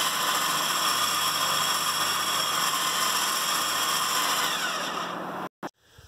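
Smittybilt X20 10 electric winch running, its motor and gear train giving a steady whine as it spools in synthetic rope under load. The whine fades slightly and cuts off about five and a half seconds in.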